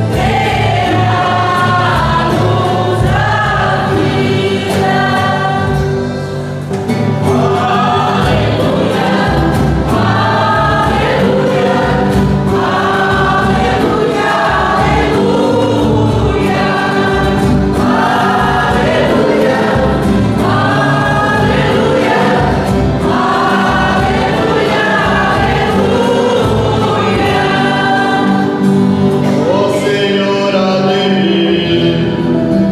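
Church music group singing a hymn in Portuguese, accompanied by strummed acoustic guitars and an accordion.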